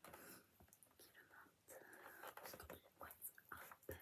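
Faint whispering in short breathy snatches.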